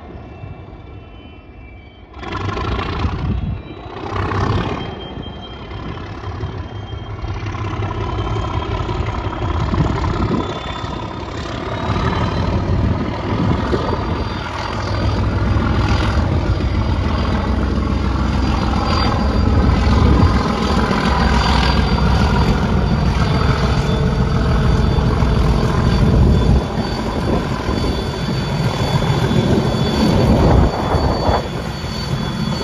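English Electric V12 diesel engine of Class 37 locomotive 37403 running under power, a deep rumble that grows louder from about halfway, with a high turbocharger whistle that rises and then holds. A few gusty bursts come in the first few seconds.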